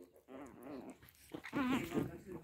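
Pomeranian puppies vocalising as they play-fight, in two short wavering bouts, the second and louder one near the end.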